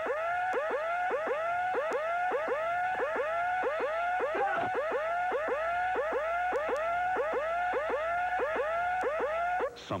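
Electronic warbling tone pulsing about three times a second, each pulse sliding up in pitch and levelling off. A short falling sweep comes about halfway through, and the tone cuts off just before the end.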